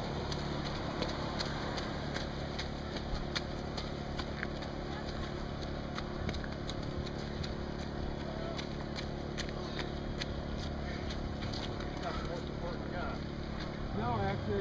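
Runners' footsteps slapping irregularly on wet, slushy pavement over a steady low engine hum, with faint voices in the background.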